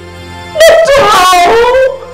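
A woman's distressed crying wail, one long wavering cry starting about half a second in and breaking off near the end, over soft background music.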